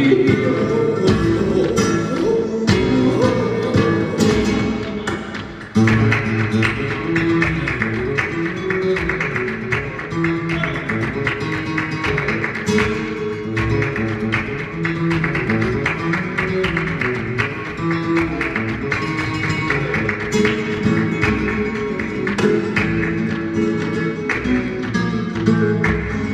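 Live flamenco music: plucked acoustic guitar with a male flamenco singer's voice. The sound dips and then cuts back in suddenly about six seconds in.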